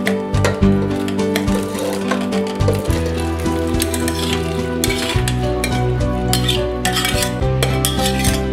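Chopped vegetables and water poured from a bowl into an aluminium pressure cooker of dry dal, splashing and clinking against the pot, loudest in the second half. Background music with held chords runs under it.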